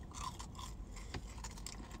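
Biting into and chewing crispy fried tater tots: faint, irregular crunching with small clicks.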